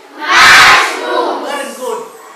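A class of young schoolchildren calling out together in chorus: one loud group shout about half a second in, trailing off into fainter voices.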